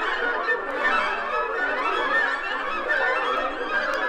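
Contemporary orchestral music: a dense mass of many overlapping wind, brass and string lines wavering and sliding in pitch, with no clear beat.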